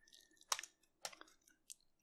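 A few faint computer keyboard key clicks, the loudest about half a second in, as a ping command is run and then stopped with Ctrl+C.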